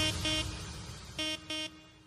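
Electronic dance remix fading out at the end of a track as the bass and beat die away. Two pairs of short, same-pitched horn-like synth notes sound, one pair at the start and one about a second in.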